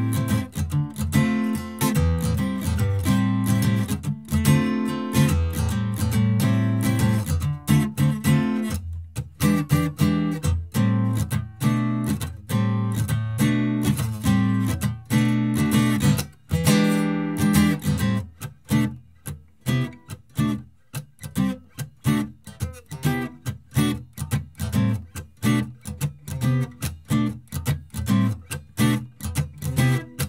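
Steel-string acoustic guitar strummed in a swing rhythm through jazzy minor-seventh chords. About two-thirds of the way through, the strums turn short and clipped, with gaps between them.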